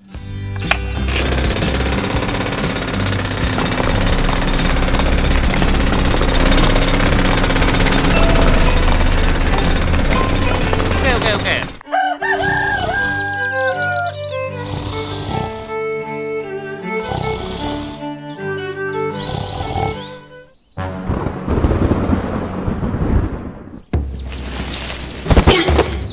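A toy tractor's motor-driven rock-drill attachment switched on and running: a loud, steady grinding noise that starts just after the switch is pressed and lasts about twelve seconds. Then music with short animal-call sound effects over it.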